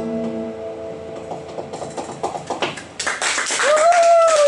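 The last guitar chord of a live song rings and fades. An audience then starts clapping about two seconds in, getting louder near the end. Someone gives a long whoop that rises and falls in pitch at the very end.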